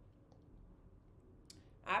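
A pause in talk with quiet room tone and a single short click about one and a half seconds in; a woman's voice starts again just after it.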